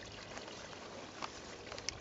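Steady, faint background hiss with two light clicks, one just past a second in and one near the end.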